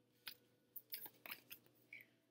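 Near silence with about six faint, short clicks and light rustles scattered through it.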